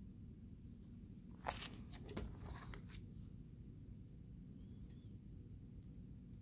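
Plastic binder sleeve page crinkling and crackling as it is turned, a cluster of crackles lasting about a second and a half, loudest at the first one.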